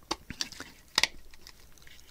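3D-printed plastic parts clicking and scraping together as a slotted axle is pushed over a motor bracket inside the body, a tight fit, with one sharper click about a second in.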